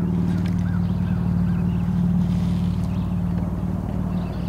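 Small boat motor running at a steady idle: an even low hum that holds the same pitch throughout.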